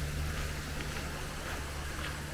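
A steady low hum under a faint even background hiss.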